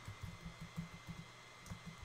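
Faint computer keyboard typing: an irregular run of soft keystrokes.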